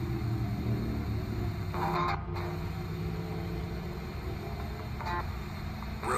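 RadioShack 12-587 ghost box sweeping the FM band: hiss and static with brief snatches of broadcast sound about two seconds in and again near the fifth second, over a steady low rumble.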